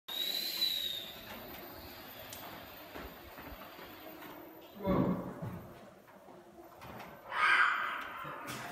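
A high, steady electronic-sounding tone for about the first second, then a faint steady hiss with a few soft knocks. A person's voice breaks in loudly about five seconds in and again near the end.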